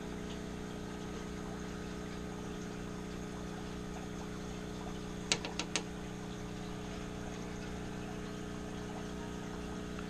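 Steady hum of running aquarium equipment, with three quick sharp clicks about five and a half seconds in.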